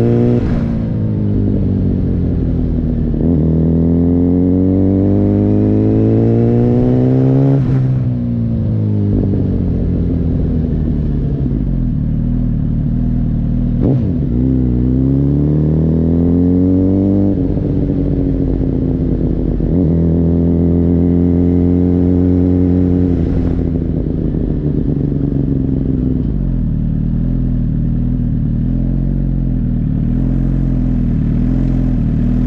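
Suzuki GSX-R sport bike engine ridden at low speed, its revs climbing and dropping several times with throttle and gear changes. It settles to a steady idle near the end.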